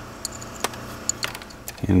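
A few scattered small clicks and metallic taps as a ground wire's ring terminal is handled and fitted onto a bolt on the car's bare metal body bracket, over a faint low steady hum.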